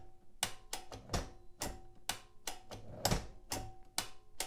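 Manual desktop typewriter's tab clear key and tabulator worked over and over to clear the set tab stops: about a dozen sharp mechanical clicks at uneven spacing, some with a brief metallic ring as the carriage jumps from stop to stop.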